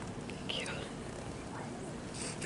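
A person's quiet, whispered voice over steady outdoor background noise, with a brief high falling chirp about half a second in.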